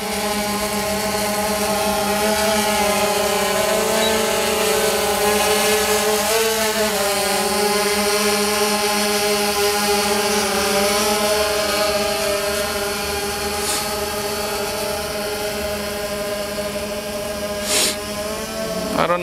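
DJI Phantom quadcopter's four motors and propellers buzzing in flight, a steady multi-tone hum whose pitch wobbles as the throttle changes while it climbs and manoeuvres. The hum eases a little as the drone flies away, with a brief rush of noise near the end.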